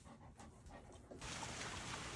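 A golden retriever panting faintly. About a second in it gives way to a steady hiss of rain falling on standing water.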